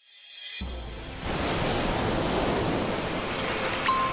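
Logo-intro sound effect of rushing water: a rising whoosh, a deep low hit about half a second in, then a loud, steady surging wash of water noise.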